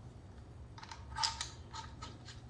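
A few small, quick mechanical clicks from the IWI Uzi Pro's parts being fitted and turned by hand during reassembly, loudest about a second in.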